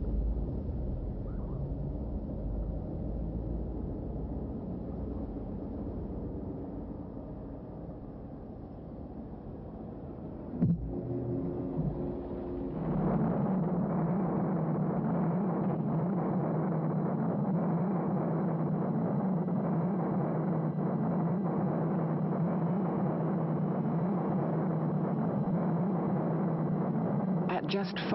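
Low, steady traffic rumble from the soundtrack of a road-safety film played back over a livestream. It grows louder and fuller about 13 seconds in, with a single click shortly before.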